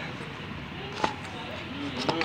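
Hands kneading soft maida dough in a steel bowl, the dough pressed and folded against the bowl, with one sharp click about halfway through.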